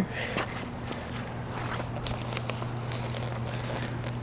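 Footsteps on a wet, slushy driveway, with scattered soft scuffs and crackles, over a steady low hum.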